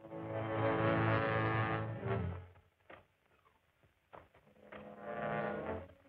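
Dramatic film-score music: two long, low, sustained brass chords, the first about two and a half seconds long and the second shorter, about four seconds in.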